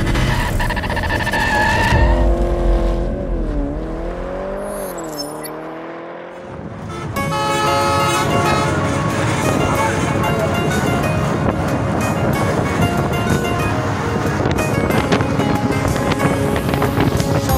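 An intro sound effect: a pitched tone that dips and then rises, then fades out. From about seven seconds in, music plays over vehicle noise.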